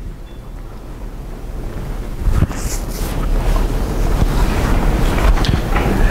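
Microphone handling noise: a low rumble with a few faint knocks, slowly growing louder, as a handheld microphone is handled and passed along.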